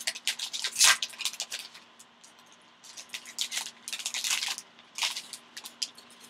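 Plastic wrapper of a trading-card pack crinkling and tearing as it is pulled open by hand, in crackly bursts with a short pause in between.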